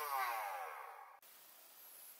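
Flywheel motors of a modified full-auto Nerf Stryfe spinning down after firing: a falling whine that fades over about a second, then cuts off suddenly.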